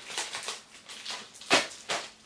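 A drink's packaging being handled and opened: a few soft rustles and clicks, a sharp click about one and a half seconds in and another just before the end.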